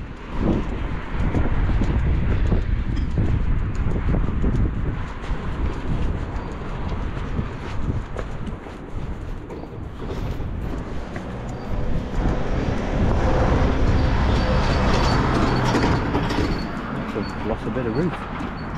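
Wind buffeting the microphone, with road traffic going by on the street; the traffic is loudest in the last third.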